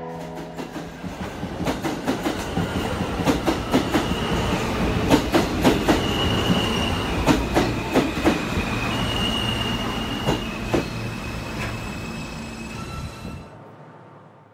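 New York City Subway F train running through a station. The wheels click sharply and irregularly over the rail joints, and a thin high squeal of wheel on rail comes and goes. The sound fades out near the end.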